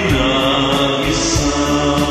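A man singing a Tagalog ballad, holding one long note over a karaoke backing track.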